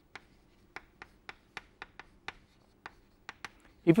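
Chalk writing on a chalkboard: a string of short, sharp taps and scratches as the letters are made, about three a second.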